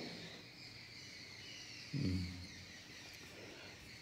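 Quiet room tone with a faint, steady high-pitched background chirr. About two seconds in, a man gives a brief low hum of voice lasting about half a second.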